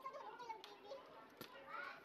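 Indistinct background chatter of diners in a fast-food restaurant, with children's voices among it, and a single sharp clink, like a utensil or cup, about one and a half seconds in.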